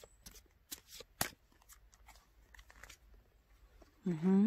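Oracle cards being handled and drawn from a deck: a scatter of soft, irregular card clicks and snaps, with one sharper snap about a second in.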